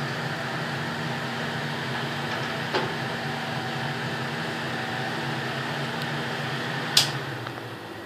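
Steady mechanical hum of a running fan or appliance, with a faint click about three seconds in and a louder sharp click near the end, after which the hum dies down.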